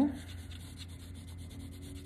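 Pencil lead scratching faintly on paper in short sketching strokes, over a low steady background hum.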